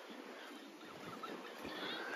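Faint, steady outdoor ambience: an even hiss with no distinct events, the background wash of a seafront.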